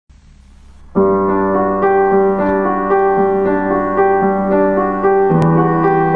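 Background piano music, starting about a second in, with slow, sustained notes.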